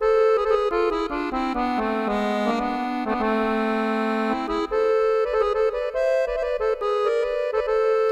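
Sampled accordion virtual instrument played from a keyboard: a slow minor-key phrase of sustained notes, with an automatic added interval voice running in harmonic minor over a lower line that steps down and back up.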